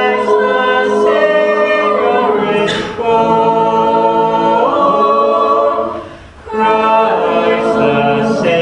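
An a cappella vocal group singing in harmony with no instruments, holding long chords. The voices break off briefly about six seconds in, then come back on a new phrase.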